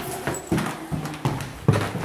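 Four irregularly spaced thumps or knocks in quick succession, the loudest near the end.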